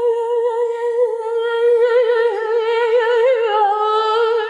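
A single voice humming one long, high held note with a wavering vibrato, the pitch sagging slightly near the end.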